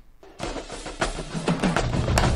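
Recording of a marching drumline playing a fast battle cadence, snare drums over bass drums, starting about half a second in.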